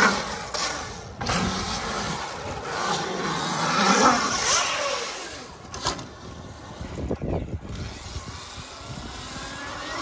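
Dirt bike riding around a concrete bowl, its motor climbing and dropping in pitch as it accelerates and backs off, loudest about four seconds in, with abrupt jumps in the sound where the shots change.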